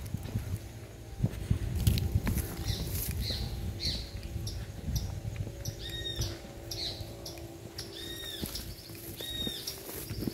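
A bird calling outdoors, a series of short, high, arched notes repeated about once a second from a few seconds in. Under it are the rustle and bumps of someone walking through grass with the phone in hand, and a low steady hum.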